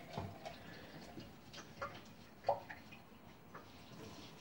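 Faint, scattered light clicks and knocks of a ceramic mug being handled and scrubbed at a kitchen sink, the sharpest knock about two and a half seconds in.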